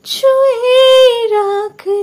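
A woman singing a Bengali song with no accompaniment: one long held line that sinks slightly in pitch, then a brief break and a new held note near the end.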